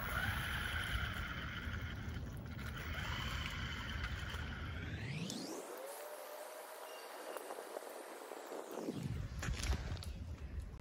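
Electric motor of a radio-controlled buggy whining steadily as it drives away across a concrete floor. About five seconds in, a tone sweeps quickly upward.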